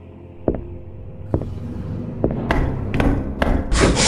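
Three heavy knocks on a door, just under a second apart, then a short hissing slide of a door hatch opening, with soft background music underneath.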